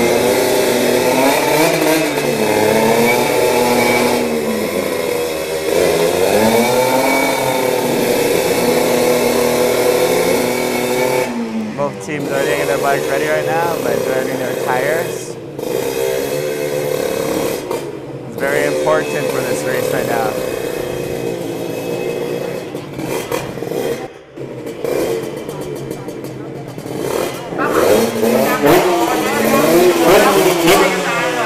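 Drag-racing motorcycle engines revving at the start line, blipped up and down over and over, about one rise and fall every second or two. The revving thins out and becomes broken about eleven seconds in.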